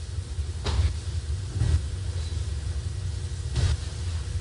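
Steady low rumble of courtroom background noise picked up by the microphones, with a few brief soft noises about a second apart.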